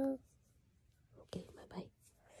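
A child's held sung note breaks off just after the start; about a second later comes a short, breathy whisper.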